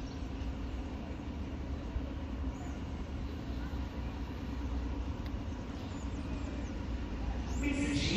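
Engine of an overhead-line maintenance rail vehicle running as it rolls slowly toward the station, a steady low rumble.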